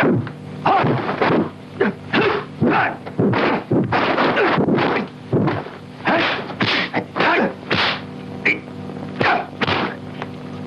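Kung fu film fight sound effects: a rapid run of dubbed punch and block hits, about two or three a second, over a steady low hum.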